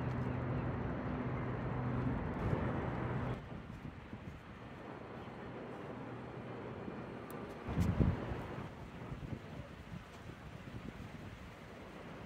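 Wind on the microphone, high up in the open air. For the first three seconds there is a steady low hum under it, which cuts off suddenly. After that the wind is quieter, with one gust about eight seconds in.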